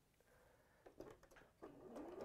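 Near silence with a couple of faint clicks about a second in; near the end a domestic sewing machine starts running, its motor whine rising in pitch.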